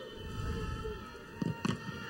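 A football struck hard from a free kick: a short thump about one and a half seconds in, then a second thump as the shot hits the defensive wall, over low stadium ambience.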